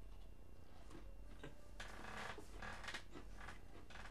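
Faint chewing of a holiday cookie, with small mouth clicks and a short breathy, noisy stretch about two seconds in.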